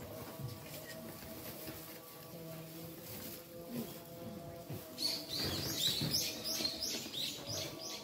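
A songbird singing a quick run of repeated falling high notes, starting about five seconds in and louder than everything else, over faint steady background sound.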